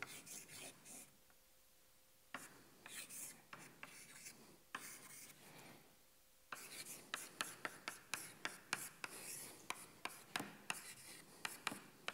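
Chalk writing on a chalkboard: scratchy strokes and sharp taps in clusters. There is a short pause a little after the start and another around the middle, and the strokes come thick and fast in the second half.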